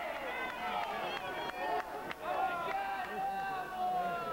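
Several voices calling and shouting over one another during a basketball game on an outdoor court, with a few short sharp knocks in the first half.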